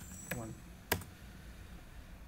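Separate keystrokes on a computer keyboard: a few short key clicks, the loudest about a second in, as a number is typed into a spreadsheet formula and entered.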